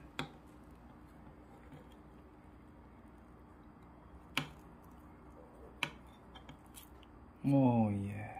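A few sharp, isolated clicks, spaced seconds apart, as a knife works the lemongrass stalks out of a roasted lechon pork belly roll on a wooden board. A short spoken exclamation comes near the end.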